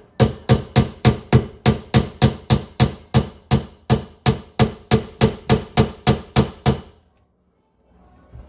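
Rapid, evenly spaced knocks, about three to four sharp strikes a second. They stop abruptly about a second before the end.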